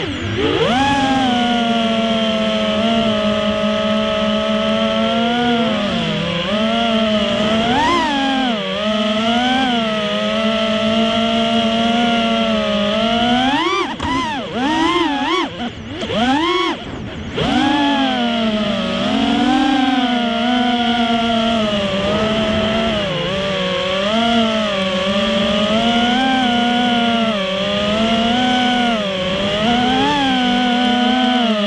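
FPV racing quadcopter's brushless motors spinning Ethix S3 propellers, heard from the onboard camera: a whine whose pitch rises and falls with the throttle. About halfway through, the throttle is chopped a few times in quick succession before the whine climbs back.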